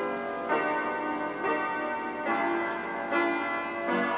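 Instrumental music: a slow run of sustained, bell-like chords, a new chord struck roughly every second.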